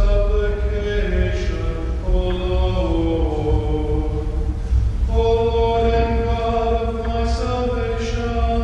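Slow hymn singing with long held notes, over steady sustained low tones.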